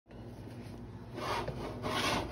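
A cooking spoon stirring and fluffing cooked rice in a pot, making grainy scraping strokes. The scraping gets louder about a second in.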